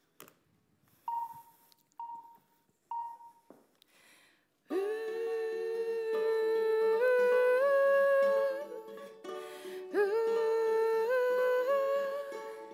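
A woman humming a slow melody in long held notes that step upward, starting a little under five seconds in, with a short break near the end, over a soft ukulele. Before it, three short single notes at one pitch, each fading quickly.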